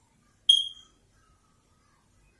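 A single short, high-pitched electronic beep about half a second in, fading away quickly.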